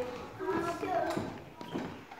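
Children's voices talking quietly, with a few light taps and knocks.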